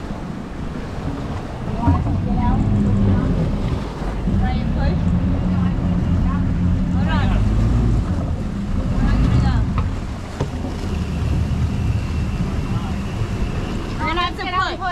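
Twin Suzuki outboard motors running in gear and churning the water while the boat sits stuck on a sandbar. Their steady low hum grows louder about two seconds in and stays strong, easing a little about ten seconds in.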